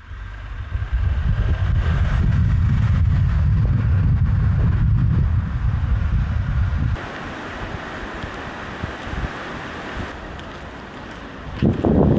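Wind and road noise from a moving vehicle: a loud, uneven low rumble of wind on the microphone for about seven seconds. It then cuts abruptly to a quieter, hissing wind noise.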